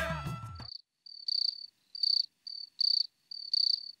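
A music sting fades out in the first moment, then a cricket chirps steadily in short high trills, about two a second, the night ambience of an outdoor scene.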